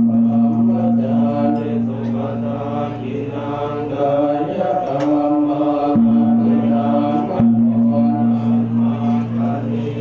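Group of Theravada Buddhist monks chanting Pali blessing verses in unison, a steady near-monotone drone held on one low pitch with brief breaks for breath about six and seven and a half seconds in.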